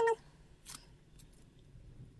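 A brief pitched voice sound right at the start, then faint, sparse clicks and rustles of gloved hands handling a flexible silicone mould filled with resin.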